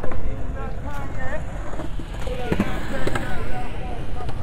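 Wind rumbling on the microphone, with indistinct talk of passers-by and a few scattered clicks of footsteps or wheels on the pavement.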